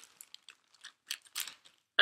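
Soft rustling and a few light clicks from a knitting project being picked up and handled, yarn and needles moving, with the clearest clicks a little after a second in.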